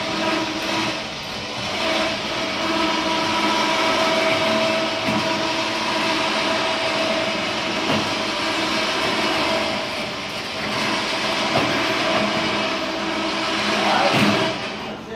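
A machine running steadily with a held whining tone and a few faint knocks, heard while the motorcycle rack on the truck is being worked.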